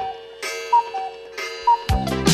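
Clock-style tick-tock sound with short chiming tones over a steady held note, which cannot come from the tower clock because it is stopped. A music track with a heavy beat comes in near the end.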